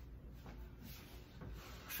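Faint rubbing and rustling from a person moving about close to the microphone, with a few small soft knocks.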